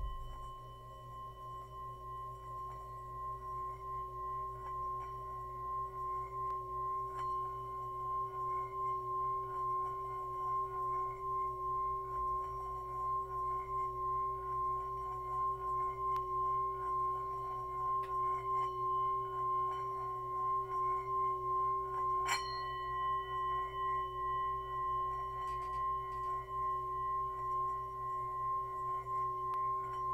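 Metal singing bowl played by rubbing a wooden mallet around its rim: a steady ringing hum with a low and a higher tone that swells over the first several seconds and pulses evenly as the mallet circles. About 22 seconds in there is a single sharp click, and a higher overtone rings out more clearly after it.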